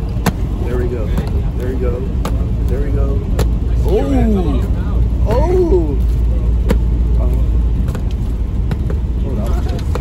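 Steady low rumble inside a car's cabin on the move, with a couple of short stretches of quiet voices in the middle.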